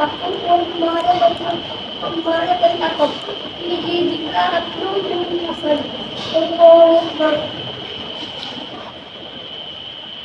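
A boy's voice chanting Quranic recitation aloud in long held, melodic notes, falling silent about three-quarters of the way through. A steady high-pitched whine runs underneath.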